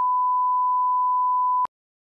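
Steady 1 kHz broadcast test tone, the 'bars and tone' signal that goes with colour bars, a single unwavering beep that cuts off abruptly with a click about a second and a half in.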